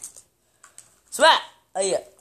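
A man's voice making two short wordless vocal sounds, each rising and then falling in pitch, about a second in and near the end, with faint clicks before them.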